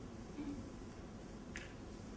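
Faint room tone with a single short click about one and a half seconds in, and a softer knock shortly before it.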